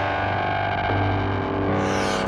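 Music without singing: steady held chords over a low sustained bass note, the chord shifting about a second in.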